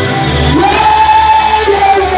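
Church worship singing with band accompaniment: a voice slides up and holds one long high note over a steady bass and keyboard backing.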